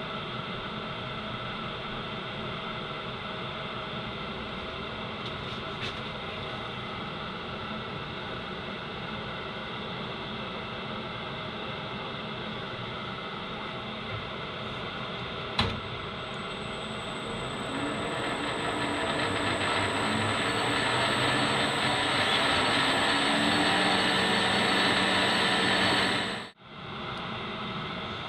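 Small bench metal lathe's electric motor and gearing running with a steady hum of several tones and a click about halfway through. In the second half the sound grows louder and harsher, with a thin high whine over it, then cuts off suddenly.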